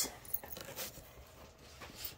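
Faint rustling and a few light clicks as a cardboard box lid is lifted open by hand.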